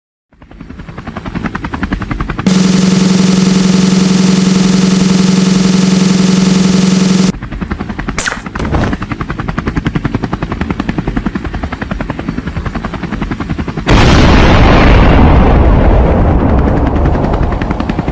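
Cartoon action sound effects: a fast, even rattle fades in and runs on, with a loud, steady buzzing tone for about five seconds over it. About fourteen seconds in, a bomb explosion goes off suddenly with a long rumble that slowly dies away.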